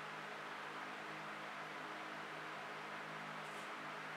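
Steady background hiss with a faint low hum, unchanging throughout, with no distinct sound events.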